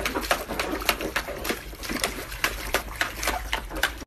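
Short, irregular wet splashing sounds, several a second, from a dog lying in shallow water in a plastic paddling pool.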